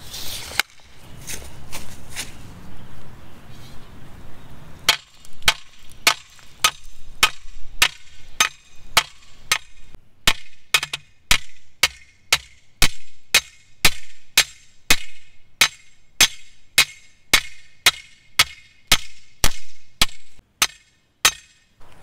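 A steel T-post being driven into the ground, struck over and over. A few scattered blows come first, then from about five seconds in there is a steady run of ringing clanks, about two to three a second.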